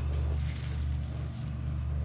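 A steady low hum from an unseen machine or background source, with faint rustling of a hand sifting damp worm-bin compost.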